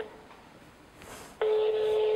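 Telephone ringback tone of an outgoing call: one steady single-pitched beep of about a second, starting about one and a half seconds in, as the line rings before it is answered.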